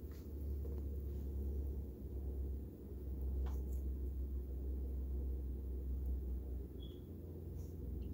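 Steady low room hum with a few faint, separate snips as small scissors cut the leathery shell of a ball python egg.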